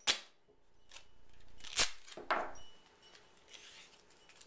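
Duct tape being pulled off the roll, a ripping sound that grows louder for about a second, then torn off with a sharp snap, followed by a second sharp crack shortly after.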